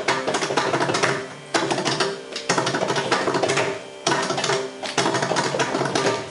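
Mridangam solo (thani avartanam) in fast rolling strokes with ringing pitched beats, pausing briefly twice, about one and a half and four seconds in.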